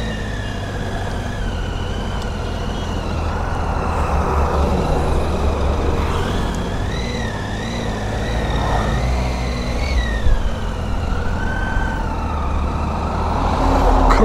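Triumph Tiger 800 inline-triple motorcycle engine running under way, with wind and road rumble and a high whine that rises and falls several times.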